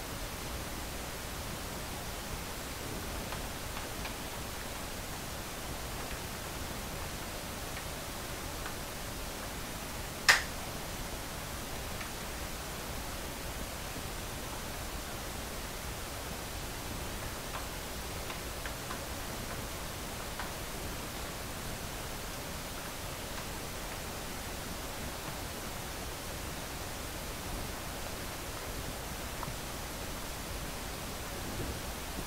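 Steady low hiss of background room and recording noise, with one short sharp click about ten seconds in and a few faint ticks later.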